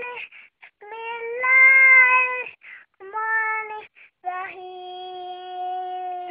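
A young child's high voice reciting the Quran in a qari's drawn-out melodic style. Two rising phrases come first, then, about four seconds in, a long note held steady for about two seconds.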